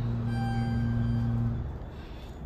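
ThyssenKrupp hydraulic elevator machinery humming with a steady low hum, which cuts off suddenly about one and a half seconds in.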